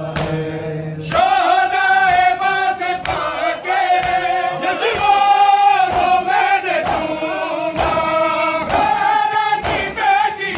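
A crowd of men chanting an Urdu noha in unison, the chant swelling about a second in, with sharp hand slaps on bare chests (matam) about once a second keeping the beat.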